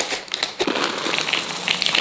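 Chocolate chips pouring from a plastic packet into a plastic mixing bowl: a dense run of small clicks and crackles, with the packet crinkling.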